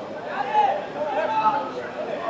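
Indistinct voices talking.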